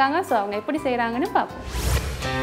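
A woman speaking over a soft music bed; about a second and a half in her voice stops and a rising whoosh of a transition effect swells up into music.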